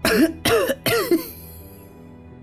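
A man's voice giving three short, breathy laughs in about the first second, over soft background music.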